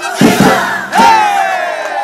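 Final drum strikes closing a mariachi number, then about a second in a long, loud shout from the performers, held and sliding down in pitch, over the voices of a crowd.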